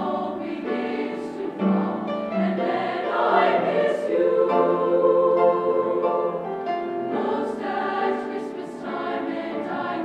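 Youth choir singing in chorus, its chords swelling to long held notes through the middle of the passage before easing off.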